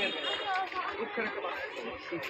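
People talking together, several voices chattering at once.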